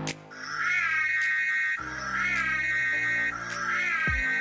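Intro music: a high, wavering melodic phrase that swoops up and then holds, played three times over low sustained bass notes.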